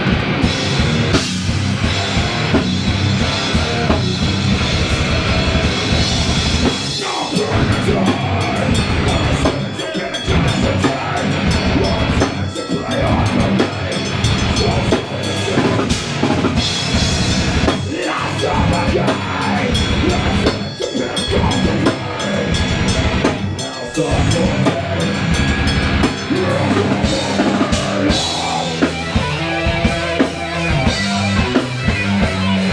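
Live metal band playing: distorted electric guitar over a drum kit, continuous and loud.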